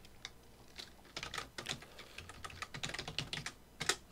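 Computer keyboard typing: a run of quick, soft keystrokes, sparse at first and coming thick and fast from about a second in, as a stock name is typed into a search box.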